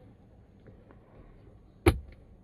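Padded centre-console armrest lid of a Toyota Corolla Cross shut once near the end, a single sharp snap with a low thump.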